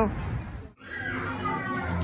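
Background voices and chatter, cut off abruptly for a moment under a second in; afterwards fainter, higher-pitched voices carry on.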